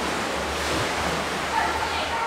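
Shallow seawater washing and splashing around wading feet: a steady, even wash of water.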